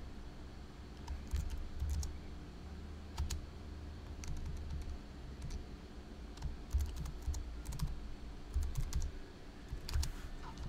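Typing on a computer keyboard: irregular keystrokes in short clusters with pauses between them.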